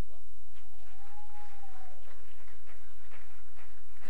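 A few scattered hand claps from an audience in a hall, irregular and sparse, over a steady low hum.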